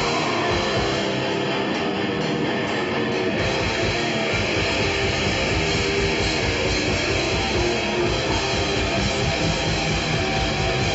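A heavy metal band playing live, electric guitars to the fore, with a fast, dense low rhythm joining about four seconds in.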